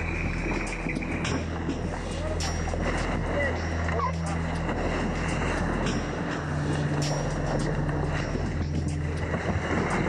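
Steady wind and sea noise aboard an ocean-racing yacht, with a low sustained music drone that changes note twice and faint, indistinct crew voices.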